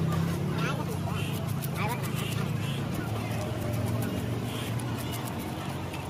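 Open-air market background: a steady low engine hum with people's voices, and faint clicks of a knife cutting through fish on a wooden block.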